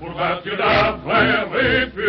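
French song celebrating the victory of the Front populaire: a sung vocal line with vibrato over instrumental accompaniment, in short phrases about a second long.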